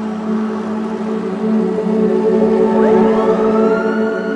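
Steady low droning background music, with an ambulance siren winding up in pitch about three seconds in and then holding a high wail.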